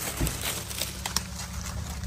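Dry corn leaves rustling and crackling close to the microphone, with scattered sharp clicks, over a steady low rumble.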